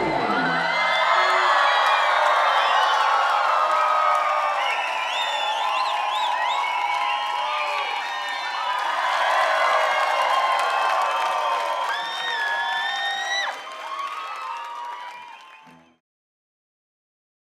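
A large concert crowd cheering, whooping and shouting in applause just after the band's song ends. It dips at about 13.5 s and fades out by the end.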